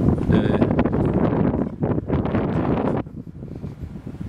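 Wind buffeting the camera microphone with a low rumble, strong for about three seconds and then easing off.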